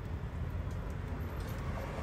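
Steady low rumble under a faint even hiss, with no distinct event.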